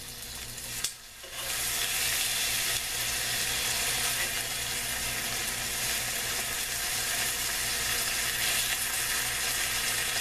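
Bacon sizzling in hot fat in a frying pan. The sizzle dips briefly about a second in, then comes back louder and holds steady.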